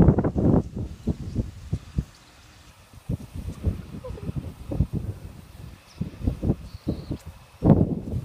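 Wind buffeting the microphone in irregular low rumbling gusts, strongest in the first half-second and again near the end.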